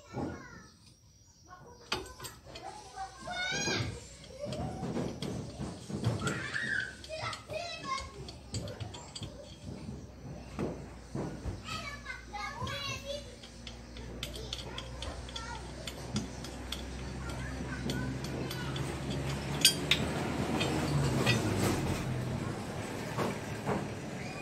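Children's voices calling and playing in the background, with scattered sharp metallic clinks and knocks from hand work on a car's rear axle hub; the loudest clink comes near the end. A low hum builds through the second half.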